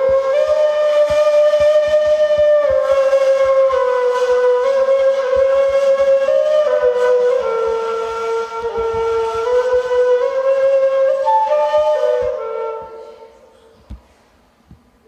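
Turkish ney, an end-blown cane flute, playing a slow melody of long held notes with a breathy tone. The playing fades out about a second before the end.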